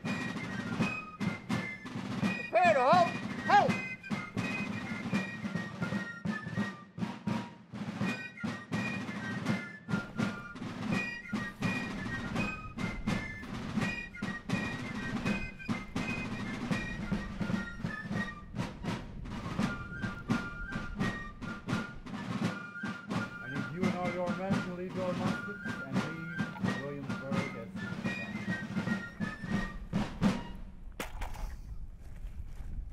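Fife and drum military music: rapid snare drum strokes under a high fife melody. A voice cuts in briefly about three seconds in and again around twenty-four seconds.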